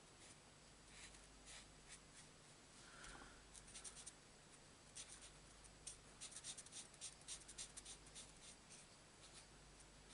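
Faint scratching of a Stampin' Blends alcohol marker tip on cardstock, colouring in small areas in bursts of short strokes, busiest a little after the middle.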